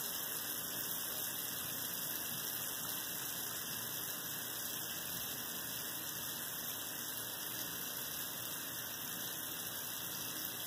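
Steady high hiss with no distinct sounds in it.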